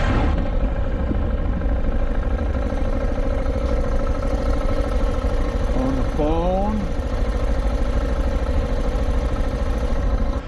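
Motorcycle engine idling steadily, heard from the rider's helmet camera, with a brief rising pitched sound about six seconds in.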